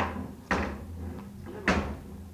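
A wooden door knocked or banged three times, at the start, about half a second in and again near the end, each a sharp knock with a low thud.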